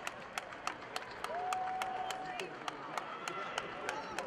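A few people clapping steadily, about three claps a second, in a large, echoing arena. A voice calls out about a second in, holding one note for about a second.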